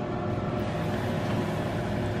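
Steady low background hum and hiss in a kitchen, with no distinct events.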